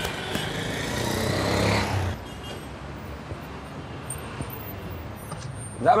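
A car driving up and stopping: its noise grows louder and rises over about two seconds, then cuts off sharply, leaving a low steady background.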